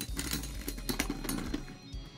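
Metal Fight Beyblade tops (Dark Gasher, Dark Libra, Dark Wolf) clatter against each other and the plastic stadium floor in a rapid ticking rattle as they run out of spin and wobble down together. The rattle thins out near the end, and background music plays throughout.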